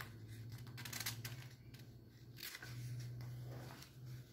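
Faint rustling of paper as a comic-book page is handled and turned, in a few short bursts, over a steady low hum.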